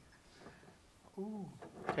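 Quiet room tone, broken about a second in by a short spoken syllable from a man's voice, with speech starting again at the very end.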